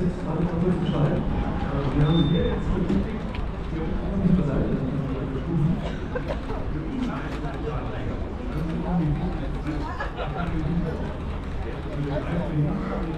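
Indistinct voices of several people talking, a loose murmur of conversation with no clear words.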